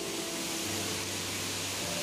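Steady rush of a waterfall close by: an even hiss of falling water that does not let up.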